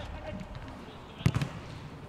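A football struck once, a sharp thud about a second in, with faint player shouts before it.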